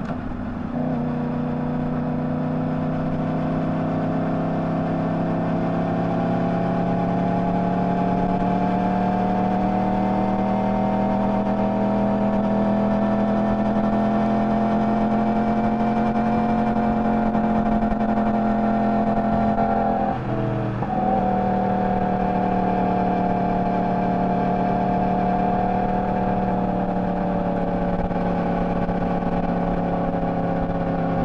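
Sport motorcycle engine running at a steady cruise, heard from on the bike. Its pitch climbs slowly over the first half, the note breaks briefly about twenty seconds in, and then it runs steady again.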